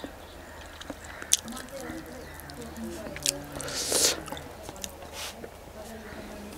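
Close-up chewing of rice and chicken eaten by hand, with scattered wet mouth clicks and a louder noisy mouth sound about four seconds in.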